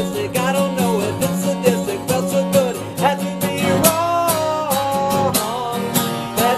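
Acoustic guitar strummed in a steady rhythm, tuned down a half step, with a man singing over it; he holds one long note near the middle.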